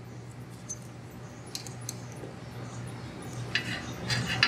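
A few faint, sharp metal clicks from a wrench and screwdriver working the rocker-arm adjusting nuts on a small overhead-valve engine while the valve lash is being set, over a low steady hum.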